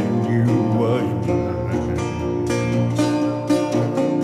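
Acoustic blues on a metal-bodied resonator guitar: an instrumental guitar passage between sung lines, with plucked notes and a few short sliding pitch bends.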